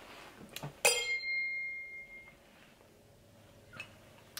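A Josephinenhütte wine glass clinks once about a second in and rings with a clear high tone that fades over about a second and a half. Faint handling sounds follow.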